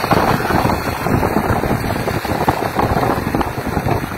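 Motorcycle running along a road, its engine heard under loud wind buffeting the microphone.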